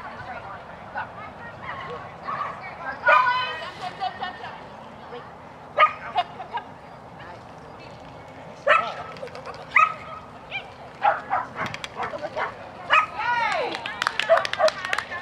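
A dog barking and yipping in short, sharp, high calls, one every few seconds at first and then several in quick succession near the end.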